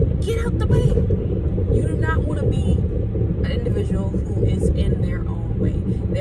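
Steady low rumble of a car heard from inside the cabin, under a woman's voice talking in short stretches.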